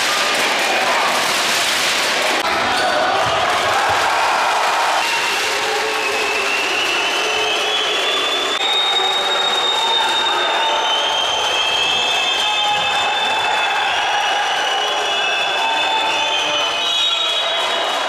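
Basketball game sound in an indoor sports hall: a ball bouncing on the hardwood court over the hubbub of spectators' voices, with high, shifting squeaks or whistles through the middle and later part.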